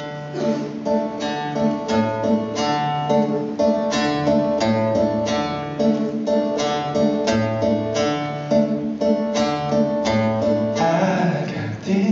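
Steel-string acoustic guitar playing an instrumental intro alone. It is picked in a steady rhythm over alternating bass notes.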